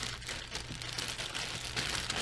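Plastic zip-top bag crinkling and rustling as hands pull it open and handle it, with scattered small clicks of the Lego track pieces inside.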